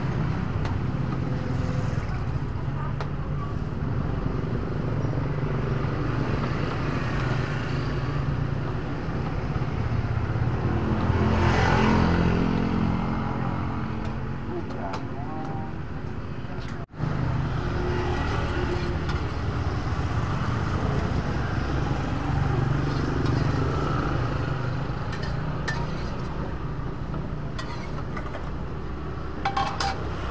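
Roadside street ambience: a steady low rumble of passing traffic, with one vehicle swelling loud and fading away about twelve seconds in.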